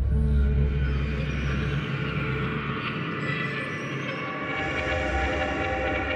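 A Collision FX sound-design patch playing in Kontakt: a sustained, dense cinematic drone of many steady, horn-like tones. A deep rumble underneath fades out about two seconds in, while brighter upper tones swell through the rest.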